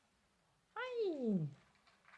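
A cat's single drawn-out meow, lasting under a second and falling steadily in pitch from start to finish.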